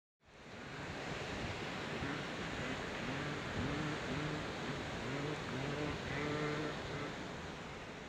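A steady rushing noise that fades in at the start, with a string of short animal calls over it, each bending up and down in pitch, from about two to seven seconds in.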